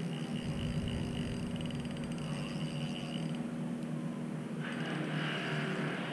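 A steady low engine hum, with a hiss that grows louder about four and a half seconds in.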